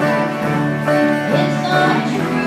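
Live country band playing a honky-tonk song on acoustic and electric guitars, steady and unbroken.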